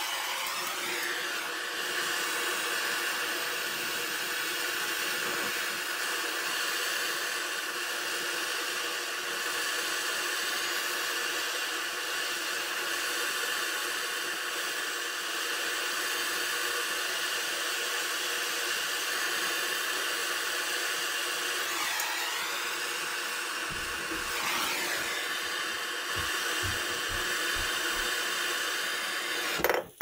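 Handheld gas torch burning with a steady hiss while its flame heats a copper pipe joint for soldering. It shuts off suddenly at the end.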